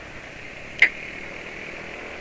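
Steady running noise of a Yamaha automatic scooter being ridden, with one short sharp click a little under a second in.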